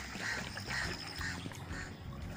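Quiet lakeside ambience: a low steady rumble with a few faint, distant duck quacks.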